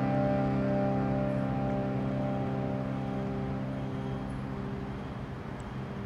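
Harmonium holding one sustained chord that slowly fades away.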